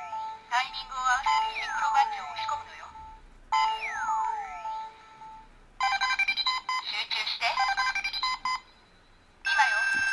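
Electronic sound effects from a Tomica Hyper Rescue Drive Head Drive Gear toy, heard through its small speaker: sweeping tones that glide down and up over a steady beep, then from about six seconds a burst of recorded voice with music as the Drive Badge's audio plays.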